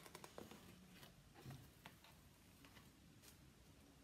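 Near silence, with a few faint clicks and light handling noises as a cardboard shoebox lid is lifted open.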